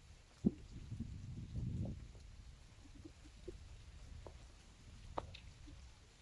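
Faint low rumble of wind buffeting a handheld phone's microphone, strongest in the first two seconds, with a sharp click about half a second in and a few small ticks later from the phone being handled.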